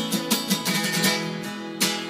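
Acoustic guitar strummed in a steady rhythm.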